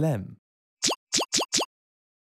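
Four short pop sound effects in quick succession, each a quick upward blip in pitch. They mark the four multiple-choice answer options popping onto the screen.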